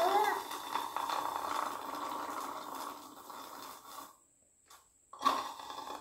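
Kiwi juice being sucked up through a drinking straw: a steady noisy slurping that fades out after about four seconds, followed by a shorter slurp near the end.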